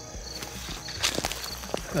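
Footsteps through dry grass and leaf litter: a few uneven crunching steps, the loudest about a second in. Insects chirp faintly in the background.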